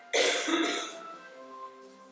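A person coughs twice in quick succession, loud and short, over soft instrumental music with long held notes.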